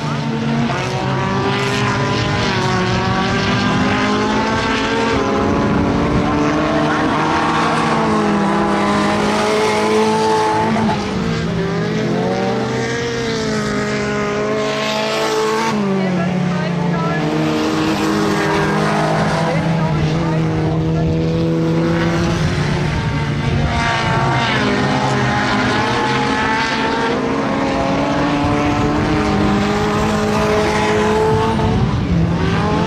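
Several small saloon race cars running on a dirt speedway track, engines overlapping and rising and falling in pitch again and again as drivers accelerate and lift off round the laps.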